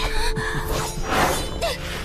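Animation sound effect for a magical dash away: a rushing, shattering burst of noise that swells and fades about a second in, over background music.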